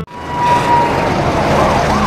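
Fire engine sirens and road noise as the trucks pass: a steady siren tone that slides slowly downward, joined about a second and a half in by a fast rising-and-falling wail.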